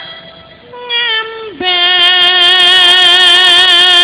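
A female sinden singing in a Javanese wayang kulit performance: after a soft short phrase, her voice settles at about a second and a half in onto one long held note with even vibrato.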